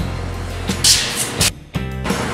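Background music with a steady bass line, dropping out briefly about one and a half seconds in.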